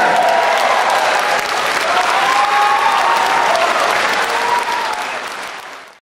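Audience applauding, with a few voices calling out over the clapping. The applause fades out over the last second.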